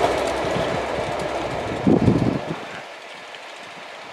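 Passing Pullman train with a Class 67 diesel locomotive moving away: its rumble and wheel clatter fade steadily, with a brief louder noise about two seconds in, and have mostly died away by about three seconds in.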